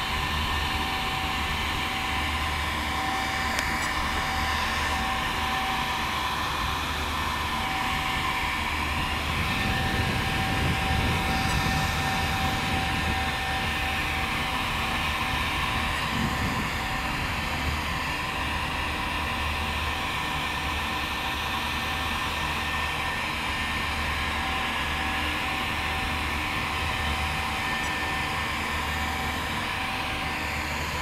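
Small electric cooling fans on an RC truck's speed controller and motor running with a steady whine.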